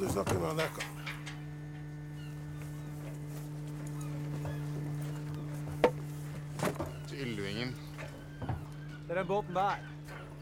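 A steady low hum, as of a running motor, continues under short bursts of voices, with a single sharp knock about six seconds in.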